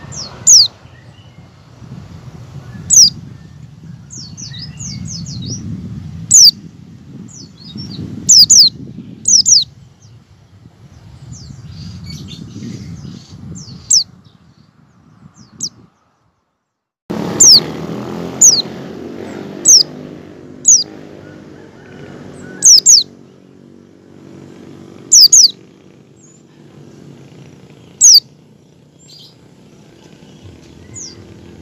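A white-eye (pleci) gives sharp, high-pitched call notes that fall quickly in pitch, singly and in quick pairs, about fifteen in all, over a low background rumble. The sound cuts out for about a second midway.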